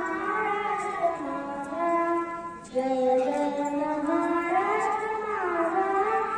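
A young girl singing solo into a microphone, holding long notes that slide up and down in pitch, with a short break for breath about three seconds in.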